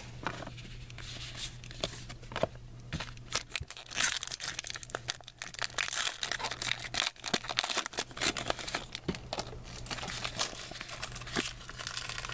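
Trading cards and pack wrappers being handled: a run of irregular rustling, crinkling and small snapping clicks of card stock and foil, busiest in the middle stretch, over a steady low hum.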